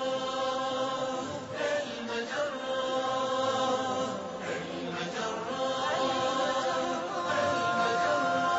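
Chanted vocal music: voices holding long notes that move in steps, growing a little louder toward the end.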